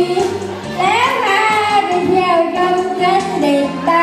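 A woman singing through a microphone and loudspeaker over amplified backing music with a steady bass line; her voice slides up in pitch about a second in.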